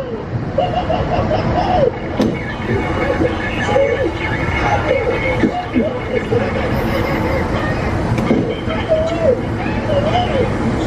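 Indistinct voices, without clear words, over a steady low rumble of vehicle noise, heard from inside a car.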